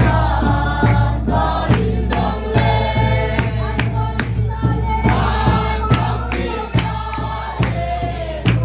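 A mixed group of men, women and children singing together, with a sharp beat keeping time a little faster than once a second.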